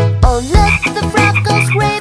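Cartoon frog croaking sound effect, several short croaks, over an upbeat children's song backing track.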